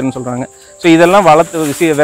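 A man talking, with a steady high-pitched insect chirring, typical of crickets, underneath; the voice pauses briefly about half a second in.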